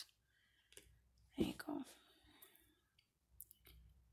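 Faint, scattered clicks of small tumbled stones and glass beads knocking against each other as a hand picks through a pile of them, with one louder clatter about a second and a half in.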